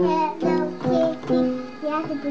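Upright piano notes struck one at a time, about two a second, each ringing on as it fades, with a young child singing along.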